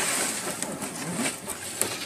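Clear acrylic cover of a tanning bed being lifted and slid off the lamp bank: a rustling, scraping noise of flexing plastic with a few sharp clicks, the loudest near the end.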